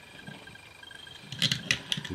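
Quiet handling, then a quick run of four or five small sharp clicks in the last half second: fingers fitting a small screw into a plastic aircraft toggle-switch housing.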